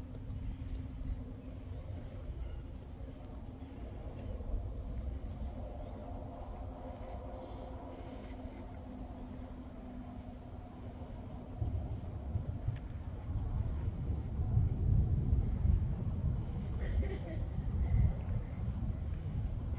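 Insects chirring steadily at a high pitch, with a faint pulsing about twice a second in the second half. Under it a low rumble grows louder about two-thirds of the way through.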